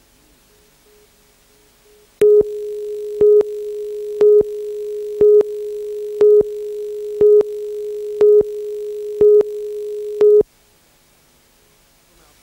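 Broadcast tape countdown tone: a steady low tone with a short, louder, higher beep once a second, nine beeps in about eight seconds. It starts about two seconds in and cuts off sharply near the end.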